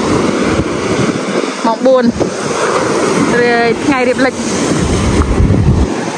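Wind buffeting the microphone over small waves breaking on a sandy beach, a steady rushing noise; a heavy low rumble from a stronger gust comes in near the end.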